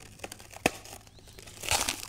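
Clear plastic wrap crinkling as it is picked at and cut away from a round metal part, with a single sharp click about two thirds of a second in and a louder burst of rustling, tearing plastic near the end.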